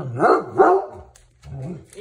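Redbone coonhound barking in protective alarm at a visiting exterminator: two loud barks in quick succession, then a softer one near the end.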